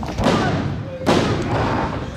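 Referee slapping the ring canvas for a pin count: two slaps about a second apart, each ringing out through the hall, a count that stops at two.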